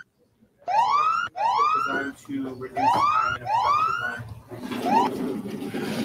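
Electronic countdown-timer alarm going off at zero: a short rising whoop, like a siren, repeated about every two-thirds of a second and breaking off about five seconds in.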